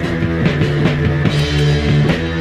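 Heavy psychedelic rock music: a band with guitar and a drum kit playing, with sustained low notes under regular drum hits.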